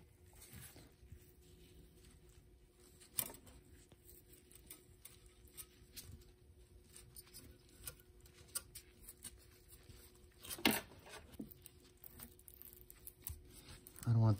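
Faint rustling and scraping of woven exhaust heat wrap being worked by gloved hands around stainless manifold runners, with scattered small clicks, the sharpest about three seconds in and near eleven seconds in.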